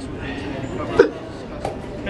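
A man's short, sharp grunt of effort about halfway through, one of a series keeping time with lying leg-curl repetitions, over faint background voices.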